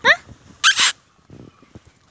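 A puppy gives a short, rising yip right at the start, followed about two-thirds of a second later by a brief hissing noise, then faint scuffling.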